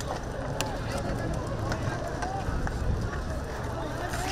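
Outdoor crowd of protesters: scattered distant shouting voices over a steady low rumble, with a sharp crack about half a second in.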